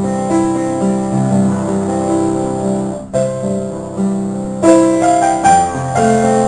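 Piano music: sustained chords and a melody in moderate tempo, with a brief break about halfway through.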